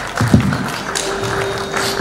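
Scattered audience clapping as background music starts, with a held note coming in about halfway through. There is a low thump near the start.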